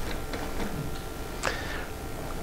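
Classroom room tone: a steady low hum with a few faint clicks, and one brief higher sound about one and a half seconds in that drops sharply and then holds for a moment.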